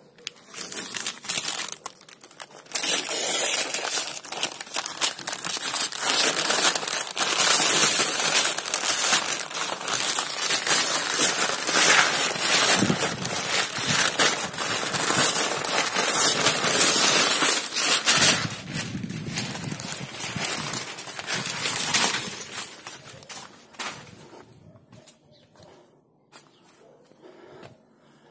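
Newspaper masking and masking tape being peeled off a freshly clear-coated van panel and crumpled: continuous crackling, rustling and tearing paper. It is loudest through the middle and dies away a few seconds before the end. This is the masking coming off once the lacquer no longer feels tacky to the touch.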